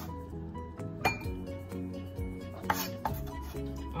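A knife chopping green onions on a wooden cutting board, a few separate knocks about a second in and near the end, over background music.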